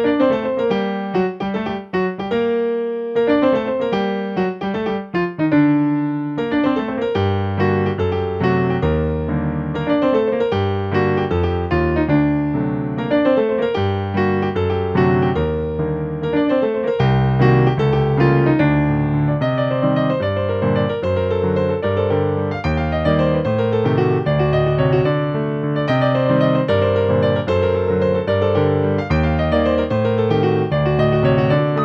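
Yamaha digital piano played solo: a brisk, flamenco-dance-like piece of dense, fast-moving notes, with a low bass line coming in strongly about seven seconds in.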